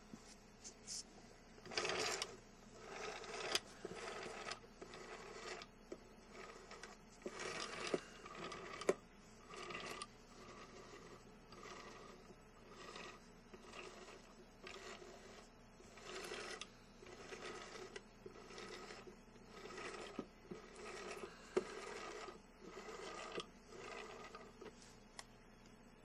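Handling noise from a metal camera lens being turned and shifted by hand on a plastic lid: irregular short scrapes and rubs with a few sharp clicks.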